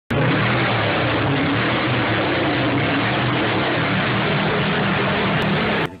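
A loud engine running steadily, a dense roar with a faintly wavering low note. It starts abruptly and cuts off suddenly just before the end.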